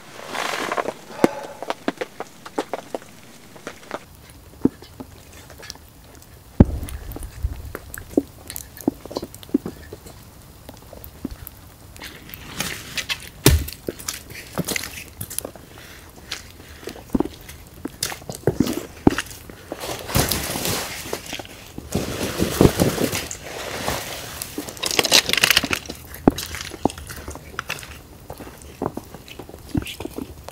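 Footsteps crunching through snow in several short spells, among scattered small clicks and knocks, with a couple of heavier thuds.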